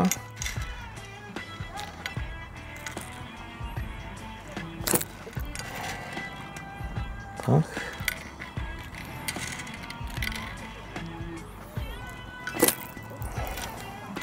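A pellet catapult fired several times, a few seconds apart, each release a sharp snap of the elastic sending feed pellets out into the pond. This is loose-feeding to draw the fish back to the spot. Background music plays throughout.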